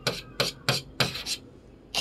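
Chalk scratching on a chalkboard while writing: four or five short, scratchy strokes in quick succession, then a pause near the end.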